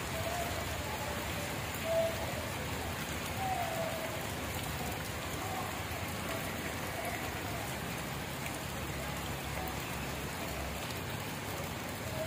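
A steady hiss of outdoor background noise with no distinct events, and a few faint short high tones now and then.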